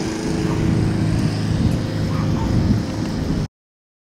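Outdoor street noise led by a motor vehicle's engine running, a steady low rumble with faint steady tones, which cuts off suddenly about three and a half seconds in.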